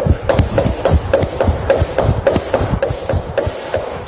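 Sneakered feet striking a wooden floor while running high knees in place, a steady rhythm of about four footfalls a second.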